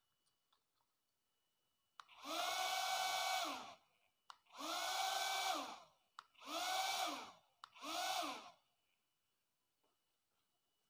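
Small electric motor of a homemade plastic-bottle vacuum cleaner switched on four times in a row, each run lasting about one to one and a half seconds, whining up to speed and winding down when cut off, with a short click at each switch-on. It is being run to empty out the garbage it has collected.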